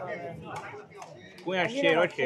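Spectators' voices, with one voice calling out loudly about one and a half seconds in.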